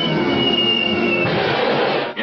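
Cartoon sound effect for a man sinking down into a car: a high whistle slowly falling in pitch over a steady rumbling, clattering noise. The whistle stops about a second and a half in and the noise carries on.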